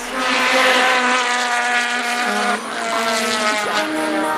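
Sport motorcycle engine running at high revs on a drag run, a steady high-pitched note that drops slightly about two seconds in.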